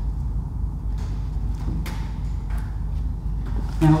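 A steady low background rumble, with a few faint light taps and clicks as the vinyl boat wrap is handled.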